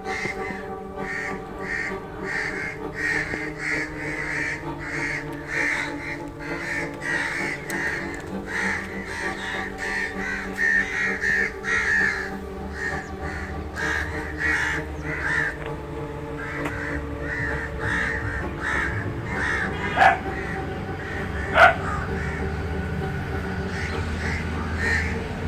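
Crows cawing over and over, about twice a second, over steady background music. Two sharp clicks sound near the end.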